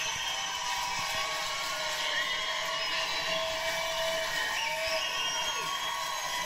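Studio audience cheering and applauding, a steady wash of clapping with a few whoops, heard from a television's speaker.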